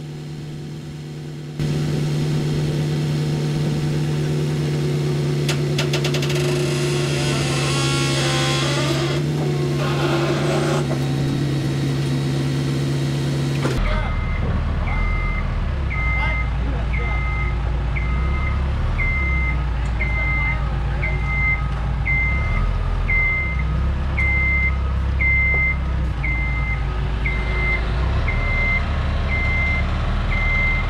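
A machine's motion alarm beeping steadily, about once a second, from the scissor lift as it drives and lowers, over a low engine rumble. Before the beeping there is a steady engine sound, with a brief rise in pitch and a hiss about halfway through.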